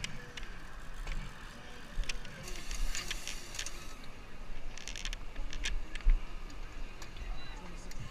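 Irregular clicks and knocks from a BMX bike as it is rolled and set against the start gate, over low wind buffeting on the helmet microphone, with a single low thump about six seconds in.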